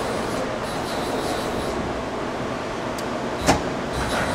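Amera Seiki MC-1624 CNC vertical machining center running with its Z axis being jogged: a steady mechanical running sound with no loud noise from the feed bearings, which the seller takes as a sign of good condition. A short click comes about three and a half seconds in.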